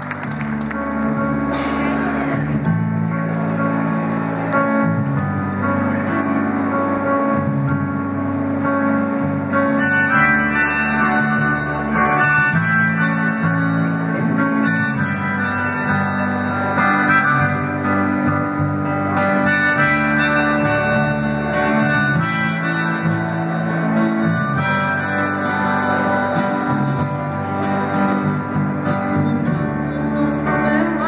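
Live guitar music played on stage, with long held notes and chords and a lead line that gets busier about ten seconds in.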